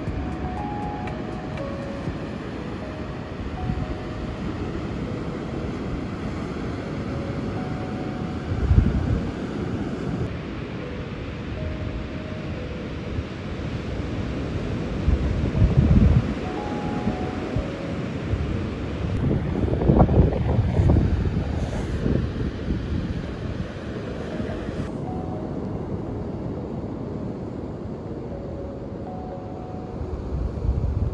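Ocean surf washing onto a sandy beach, with waves breaking louder a few times, about nine, sixteen and twenty seconds in, and wind rumbling on the microphone. Soft background music plays faintly underneath.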